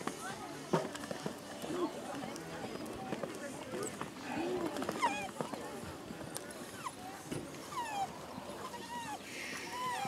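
Several people talking in the background, with the hoofbeats of a pony cantering on sand underneath.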